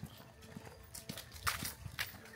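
Soft footsteps of a person and dogs on creek-bed rock and dry leaves: a few light taps and scuffs, the loudest about one and a half seconds in.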